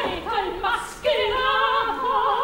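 Operatic singing: voices with wide vibrato on held notes and short phrases, more than one voice at a time.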